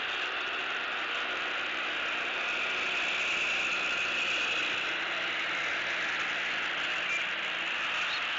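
Steady outdoor background noise picked up by a nest-camera microphone: an even, high hiss with no distinct calls, swelling slightly in the middle.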